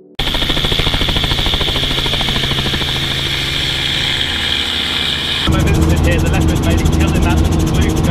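Light helicopter in flight: steady engine and rotor noise inside the cabin, with a strong high whine. About five and a half seconds in it gives way abruptly to a louder, deeper rotor and engine sound with a steady low hum.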